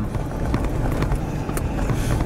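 Road and engine rumble heard inside a moving vehicle's cabin, steady and low, with scattered light clicks and rattles.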